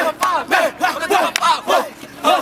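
Several voices shouting short chant calls in a quick rhythm, about three to four a second.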